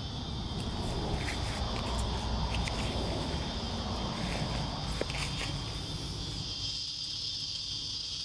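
Steady high-pitched chorus of insects trilling, with a low rustle and a few light clicks through the first six seconds or so.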